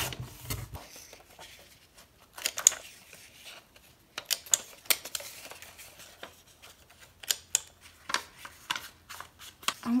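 A sliding paper trimmer's blade cuts through paper at the very start. After that comes a scatter of sharp clicks from a handheld corner rounder punch snipping the paper's corners, with paper being handled in between.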